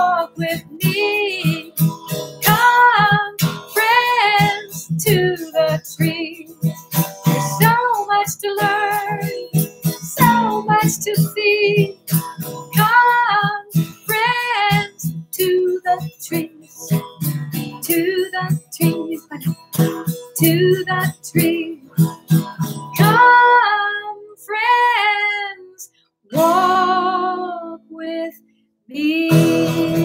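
A woman singing to her own strummed acoustic guitar, with two short breaks near the end.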